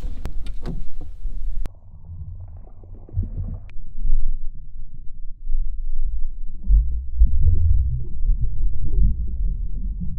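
A few splashes and knocks as the camera is plunged into the water, then the muffled low rumble and churn of water heard by a submerged action-camera microphone while a released largemouth bass swims off.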